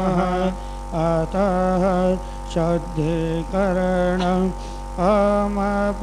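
A man's voice chanting Sanskrit mantras in a melodic, sung style, in short phrases with brief pauses, over a faint steady drone.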